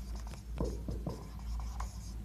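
Marker pen writing on a whiteboard: quiet, short, irregular strokes as letters are formed.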